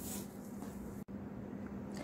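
Quiet room tone with a steady low hum, broken by a momentary dropout about halfway through.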